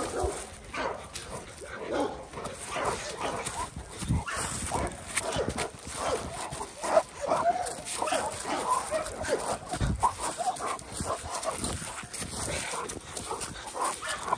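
A Rottweiler gripping and tugging on a jute bite pillow, giving short, pitched whines and vocal noises in uneven bursts, with scuffling and rustling of dry leaves underfoot.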